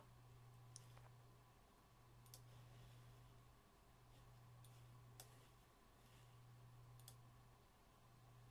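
Near silence with a steady low hum and about six faint, separate clicks from a computer mouse and keyboard.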